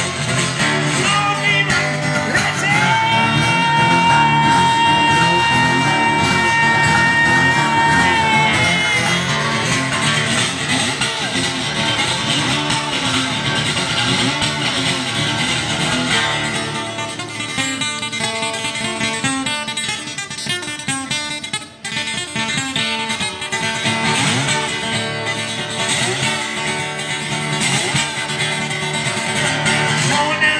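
Acoustic guitar strummed hard through an instrumental break, with one long held high note from about three to eight seconds in. About halfway through, the strumming turns into a faster, more clipped rhythm.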